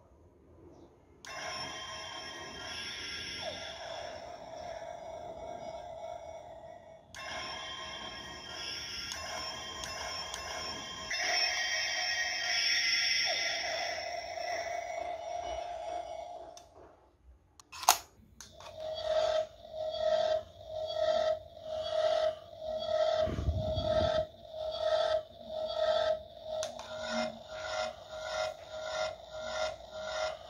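Electronic sound effects and music from the DX Evoltruster toy's built-in speaker play as a sustained, shimmering sound for most of the first half. After a short lull there is a sharp click, then the toy gives a steady electronic beeping that pulses about twice a second.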